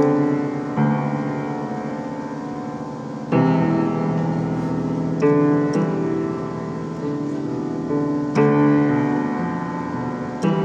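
Upright piano played slowly: chords struck every second or few, each left to ring and fade before the next.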